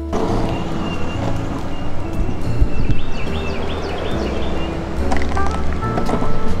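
Background music playing over a steady rushing noise from an electric longboard rolling on asphalt, with wind on the microphone.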